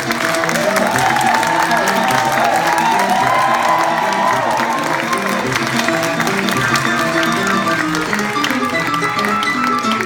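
Jazz played live on a grand piano, with audience cheering and clapping over the music in the first half.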